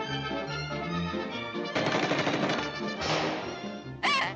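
Cartoon orchestral score, then from a little before halfway a loud, rapid rattling sound effect like machine-gun fire, in two bursts.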